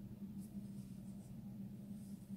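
Faint rustling and scratching of a crochet hook being worked through yarn stitches, over a steady low hum.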